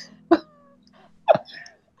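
Short bursts of laughter from a person, two sharp ones about a second apart.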